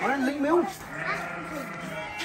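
A child's voice calling out in a short, wavering cry, followed by a faint steady low hum.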